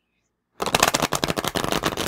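A deck of oracle cards being shuffled: a rapid run of card flicks that starts about half a second in and lasts about a second and a half. The new cards are stiff and stick together.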